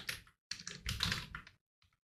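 Computer keyboard being typed on: a quick run of keystrokes about half a second in, lasting around a second, then a few faint taps near the end.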